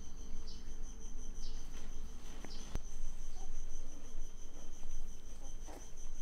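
High-pitched insect chirping: a steady, finely pulsing trill with short louder chirps about once a second, over a low steady rumble.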